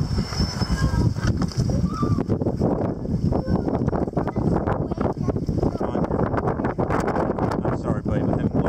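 Wind buffeting the microphone, with scattered knocks and bumps as children climb into a kayak from a dock. Children's voices are heard in the first two seconds.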